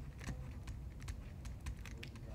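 Faint, irregular light clicks and taps of a stylus on a tablet surface while words are handwritten, over a low steady hum.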